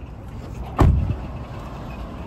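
A pickup's driver's door slamming shut once, a single sharp thud a little under a second in, over low rumbling noise.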